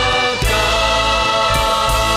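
Live Christian worship music: held chords from keyboards and voices, with drum hits about half a second in and twice near the end.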